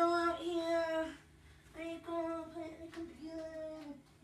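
A young person singing a cappella, holding long notes in two phrases with a short pause between them.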